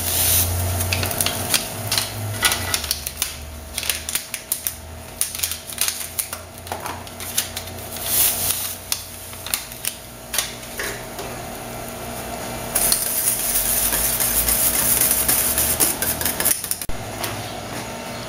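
Utensil clicking and scraping irregularly against a stainless steel pot as gelatin powder is stirred into hot soda. About thirteen seconds in, a steady hiss takes over for a few seconds.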